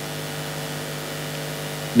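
Steady electrical hum with a faint hiss, from the microphone and sound system.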